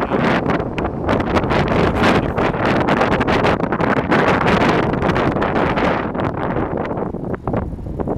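Wind buffeting the microphone of a camera carried on a moving bicycle: a loud, gusty rush of noise that eases somewhat near the end.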